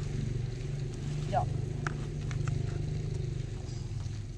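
A steady low mechanical hum, with a short voice call about a second in and a few light clicks.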